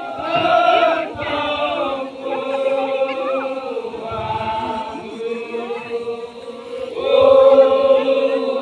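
A large group of voices chanting together in long held notes that slide slowly in pitch, a Toraja funeral chant of the ma'badong kind. It swells louder about a second in and again near the end.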